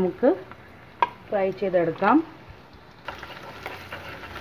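Chopped ginger and garlic sizzling in hot oil in a frying pan as a spoon stirs them; the crackling sizzle grows louder about three seconds in. A voice speaks briefly twice in the first half.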